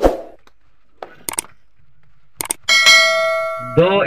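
Subscribe-button animation sound effect: two pairs of sharp mouse-click sounds, then a bright bell ding that rings for about a second near the end.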